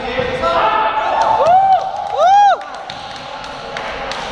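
Sounds of a basketball game on an indoor court: voices, and scattered thuds and knocks of the ball and players. Two short squeals rise and fall in pitch about a second and a half and two and a half seconds in; the second is the loudest.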